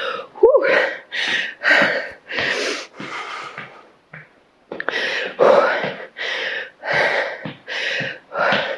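A woman breathing hard and fast, with quick audible breaths about twice a second and a short pause about four seconds in. She is winded from a round of burpees, lunges and frog jumps.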